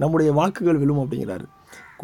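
A man's voice reciting a Tamil poem, pausing about a second and a half in.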